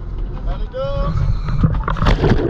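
Steady low rumble of wind on the microphone at the sea surface, with a person's voice calling out briefly about halfway through. Right at the end comes a loud splash as the camera enters the water for the dive.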